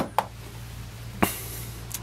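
Handling noise from small metal-cased motors: three short, light clicks as they are picked up and knocked against each other or the tabletop, one at the start, one just after, and one about a second and a quarter in.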